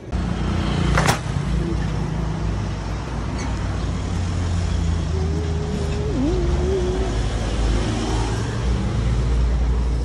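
Street traffic noise: a steady low rumble of road vehicles. There is a sharp click about a second in, and a wavering tone for a couple of seconds around the middle.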